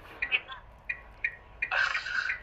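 Soft, broken voice sounds on a phone call, ending in a louder breathy burst near the end.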